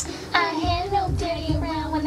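A girl's voice singing held, wavering notes over recorded music with a steady low beat, with a sharp click right at the start.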